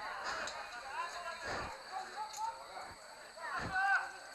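Faint, distant shouts and calls from footballers and spectators across an open pitch, with a few soft knocks.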